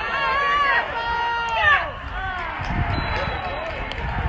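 Several people on a football sideline yelling during a play, with long, high-pitched shouts overlapping in the first two seconds and another round of shouts about two seconds in. Lower rumbling noise on the microphone fills the second half.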